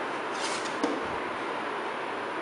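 Stiff 250 gsm card stock being handled, a brief paper rustle followed by a single light tap, over a steady background hiss.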